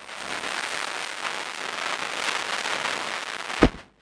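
A steady hissing, crackling noise with a single sharp crack near the end, after which it cuts off suddenly.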